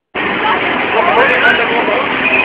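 Carnival crowd hubbub: many people talking at once over a steady background din, cutting in suddenly just after a moment of silence at the start.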